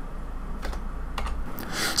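A few scattered computer keyboard clicks over a steady low hum; the hum stops about three quarters of the way through, and a short rush of noise follows near the end.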